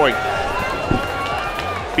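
Arena crowd noise from a fight broadcast: a steady hubbub between commentary lines.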